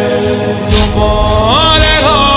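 Shia mourners' noha chanted by a lead voice in long held notes that glide up in pitch near the end, with the crowd's rhythmic chest-beating (matam) striking about once a second.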